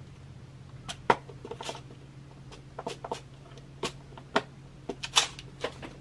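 A dozen or so light, irregular clicks and taps from handling a clear plastic bead storage box and a bundle of metal head pins being laid on a bead mat, over a faint steady low hum.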